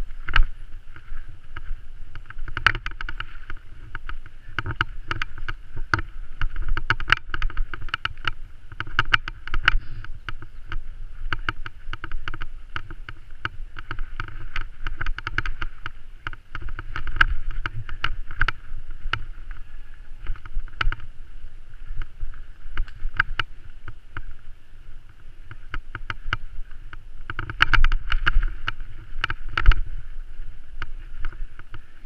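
Mountain bike riding fast down a rough forest singletrack: a constant irregular clatter of knocks and rattles as the bike and the camera jolt over roots and ruts, with rolling tyre noise underneath. It is busiest about three seconds in and again near the end.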